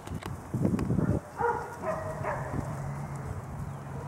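Six-week-old Airedale terrier puppies playing in dry leaves: a burst of scuffling about half a second in, then two short yaps, about one and a half and two seconds in.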